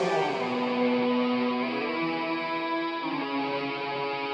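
Live band playing a slow instrumental passage of long held notes, the melody moving to a new pitch every second or so.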